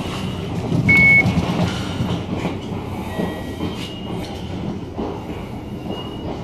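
A short, high electronic beep about a second in as the Hitachi elevator's hall call button is pressed, over a continuous low rumble.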